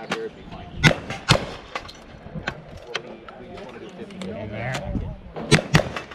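Gunshots fired at steel targets in a cowboy action shooting stage: two loud shots about a second in, half a second apart, some fainter pops, then two quick shots near the end. Voices talk in between.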